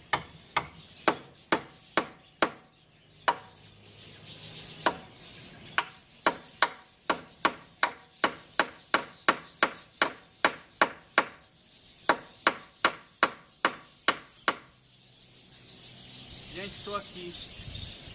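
Hammer driving nails into the wooden boards of the stair-step forms: sharp blows, scattered at first, then a steady run of about two a second that stops about two-thirds of the way in. A rising rustling noise fills the last few seconds.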